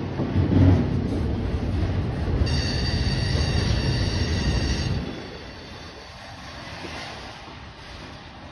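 Manifest freight train cars rolling past with a low rumble of wheels on rail. A wheel squeal of several steady high tones sets in about two and a half seconds in and stops near the five-second mark, when the rumble also drops suddenly much quieter.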